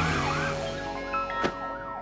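Police car siren wailing in rising and falling sweeps as the car speeds off, over background music. A sharp click comes about one and a half seconds in.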